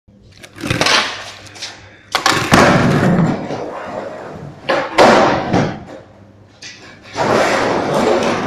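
Skateboard wheels rolling on a concrete floor, broken by sharp clacks of the board being popped and landing, the loudest about two seconds in and about five seconds in.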